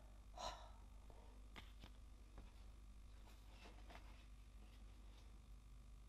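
Near silence: room tone, with a soft breath about half a second in and a few faint ticks from card stock being handled on the craft mat.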